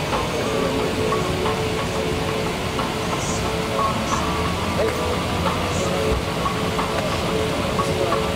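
Steady rushing cabin noise inside a parked Airbus A380, typical of the cabin air-conditioning running at the gate, with faint, indistinct voices of people nearby.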